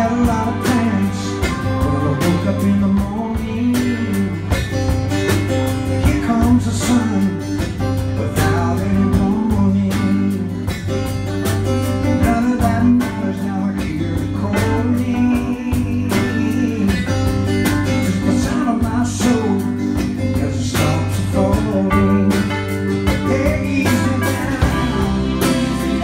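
Live country-gospel song played by a band with a string orchestra: strummed acoustic guitar and violins under a man's singing voice.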